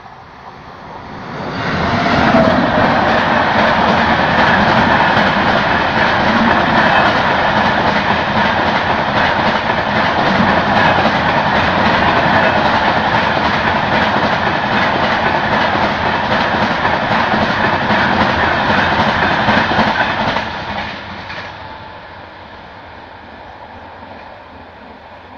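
Express passenger train hauled by a WAP7 electric locomotive passing at speed: a loud rush of steel wheels on rail with clickety-clack from the coaches. It builds sharply about two seconds in, holds steady for roughly eighteen seconds, then drops away as the train recedes.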